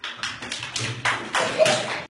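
A group of young children clapping their hands, a quick uneven run of several claps a second.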